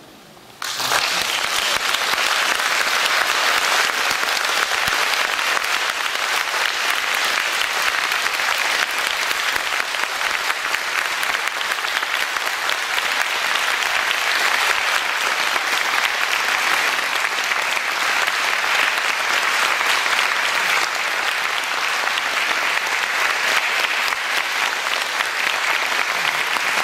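Audience applause in a concert hall, breaking out suddenly about half a second in, just after the music ends, and keeping up steadily.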